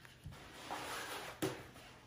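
Soft rustling of a rolled diamond-painting canvas being handled and rolled backwards, with a sharp tap about a second and a half in.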